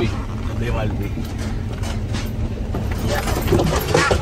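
Low, steady rumble of a Jeep Wrangler's engine and tyres heard inside the cabin as it is driven slowly.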